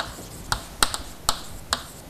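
Chalk writing on a blackboard: five sharp taps, about half a second apart, as each letter is struck onto the board.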